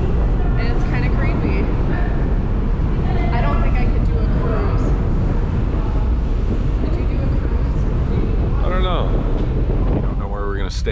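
Wind buffeting the microphone on the deck of a moving ferry: a heavy, steady low rumble, with a few brief snatches of voice.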